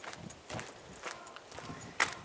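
Footsteps of a person walking on a paved street, about two steps a second.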